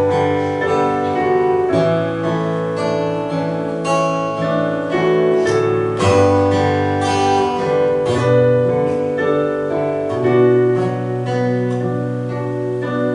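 Acoustic guitar and piano playing the music of a worship song at a steady, moderate level.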